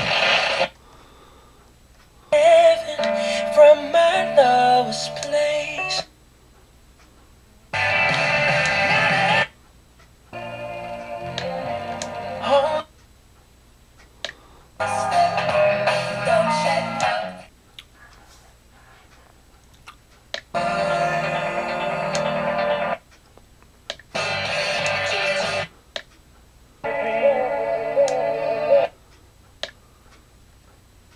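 FM radio on a ROJEM HBPC1602B portable boom-box speaker scanning through stations. There are about eight short snatches of broadcast music, each a couple of seconds long, with a brief silence between them as the tuner seeks and locks onto the next station.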